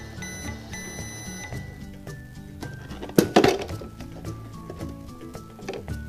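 Battery-powered toy microwave playing its electronic cooking tones and beeping as its cycle ends, over background music, with one sharp click about three seconds in.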